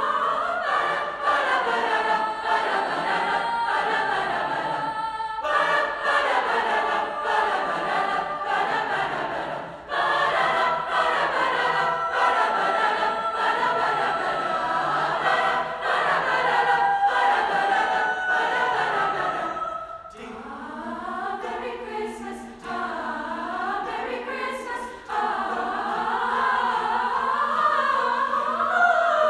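High school mixed chorus singing, boys' and girls' voices together. The phrases break briefly about ten and twenty seconds in, and there is a softer passage over a held low note before the voices swell again near the end.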